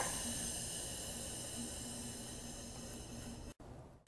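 Dry air holding charge hissing out of a Copeland X-Line condensing unit's just-opened brass service valve. The hiss fades steadily as the pressure bleeds down, then cuts off suddenly near the end.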